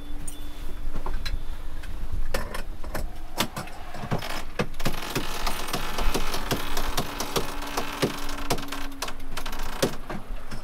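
Sailing yacht's sheet winch being worked after a tack: a run of sharp, uneven ratchet clicks from the winch with a rushing of sheet and sail between them. A steady low hum runs underneath at times, and a faint high electronic beeping repeats in the first second or so.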